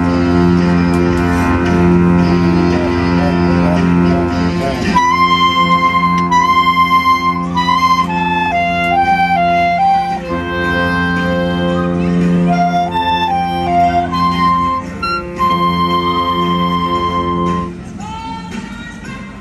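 Student woodwind band of clarinets, flute and saxophone playing a tune together. Held chords sound for the first five seconds, then a melody line comes in over them, and the music breaks off just before the end.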